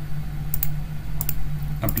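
Two pairs of quick clicks from working a computer, about half a second and just over a second in, over a steady low hum. A man's voice comes in right at the end.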